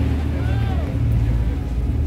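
Low, steady rumble of a river tour boat's engine underway, with faint passenger voices over it.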